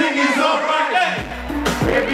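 Live rap concert: a crowd shouting along with the performers over the music. The beat's bass drops out for a moment, leaving mostly voices, then comes back in about a second and a half in.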